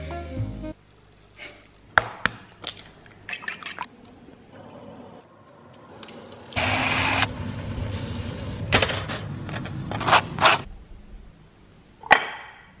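Egg and spinach cooking in a hot frying pan: a few sharp taps and clicks, then a sudden loud sizzle about six and a half seconds in that settles into steady frying, with utensil clicks against the pan near the end.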